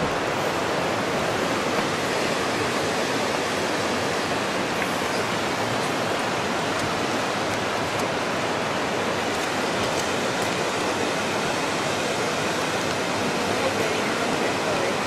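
Steady rushing of river water, an even, unbroken noise.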